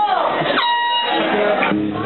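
A man's voice, then a single sustained high note from an amplified electric guitar, struck sharply and held for about a second, followed by a few low bass notes near the end as the band sets up to play.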